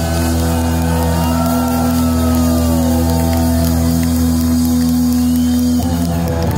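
Live rock band holding one long, steady chord on amplified electric guitar and bass, with audience members whooping and shouting over it. Near the end the held chord breaks off and new guitar notes begin.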